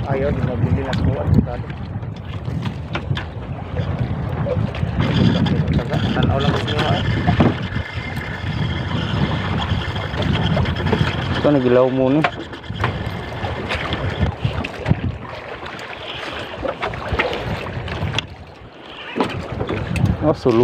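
Wind rumbling on the microphone over the wash of the sea, steady throughout, with a man's voice briefly at the start and again around twelve seconds in.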